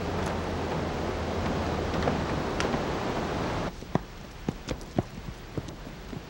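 Steady outdoor rushing noise that cuts off abruptly a little past halfway. It is followed by a quieter stretch of irregular sharp footsteps on a gravel path, about two or three a second.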